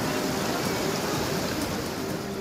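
Steady rain, heard as an even, continuous hiss.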